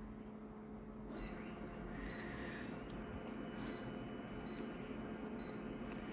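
Konica Minolta bizhub C227 copier's touch panel giving about five short, faint high-pitched beeps, roughly a second apart, as its on-screen keys are pressed, over a low steady hum.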